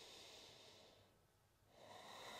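Near silence with faint breathing: one soft breath in the first second, and another starting just before the end.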